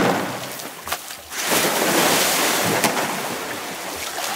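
Pool water splashing and churning as a young polar bear thrashes about with a floating plastic canister toy: a sharp splash at the start, then a long, louder surge of splashing through the middle that slowly dies down.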